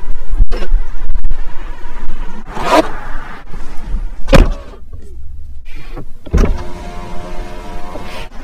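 Tesla Model Y door hardware: a few sharp clunks from the door handle and door, then an electric window motor running steadily over the last second or so.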